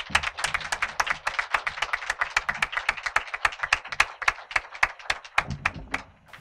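Audience applauding, many hands clapping at once, the claps thinning out and stopping near the end.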